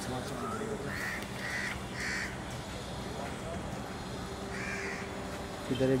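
A crow cawing three times in quick succession about a second in, then once more near the end, over a steady low hum.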